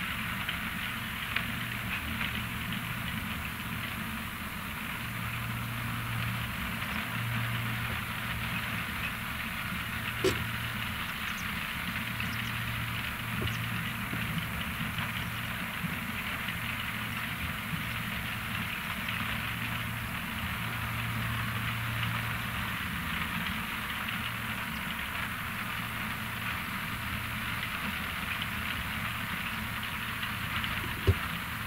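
ROPA Maus 5 sugar beet cleaning loader at work: a steady engine drone under a continuous crackling rattle of beets running through its cleaning rollers and conveyors. One short sharp knock comes about ten seconds in.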